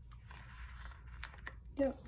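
Faint rustling of paper with a few light clicks as a sticker is pressed down onto a planner page and the page is slid on the table.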